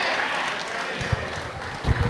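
Handheld microphone being passed from hand to hand, giving two low handling thumps, one about a second in and one near the end, over faint crowd chatter in a large hall.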